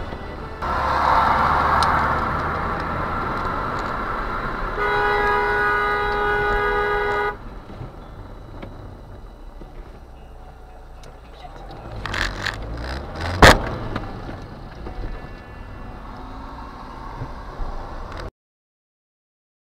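A car horn held for about two and a half seconds, starting about five seconds in, over road and engine noise heard from inside a car. A few sharp knocks come around twelve to thirteen seconds in, the last one the loudest.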